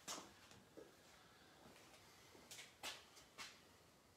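Near silence with a few faint taps and scuffs: a person's footsteps as he walks across the floor, three of them close together near the end.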